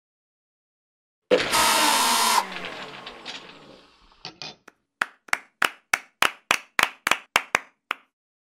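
Edited sound-effect sting: a sudden loud crash with ringing tones that fades away over about two seconds, then two quick knocks, then about a dozen sharp knocks at three or four a second as the logo comes up.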